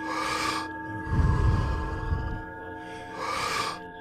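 A person doing Wim Hof power breathing: a quick, deep inhale at the start, a longer blowing exhale about a second in, then a second quick inhale near the end. A steady drone of background music sounds underneath.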